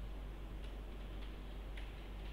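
Faint, irregular clicks of a pen stylus tapping on a tablet while writing, over a steady low hum.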